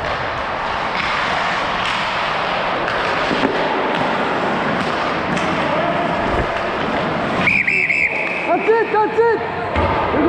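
Steady scraping of skates on ice and rushing noise from the referee skating after the play. About seven and a half seconds in, a referee's pea whistle trills sharply for about half a second to stop play as the goalie covers the puck, and players' voices follow.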